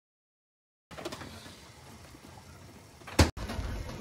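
Dead silence, then faint room tone from about a second in, broken by one sharp knock just past three seconds in.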